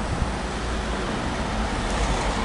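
Steady street traffic noise, a low rumble with no distinct engine note standing out.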